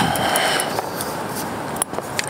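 Rustling and scraping handling noise with a few light clicks and rattles as a mountain bike is lifted up and set against a suction-cup bike rack on a car's rear window.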